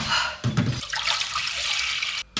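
Water pouring from a large plastic bottle into a saucepan, a steady splashing stream starting about a second in, after a dull thump about half a second in.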